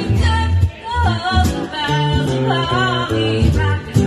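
Live performance of a woman singing a melody into a microphone, accompanied by acoustic guitar, amplified through a PA.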